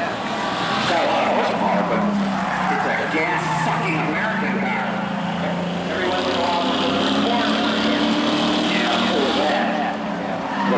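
Figure-eight race cars' engines running hard around the track, their pitch rising and falling as the drivers get on and off the throttle, with tires squealing and skidding through the turns.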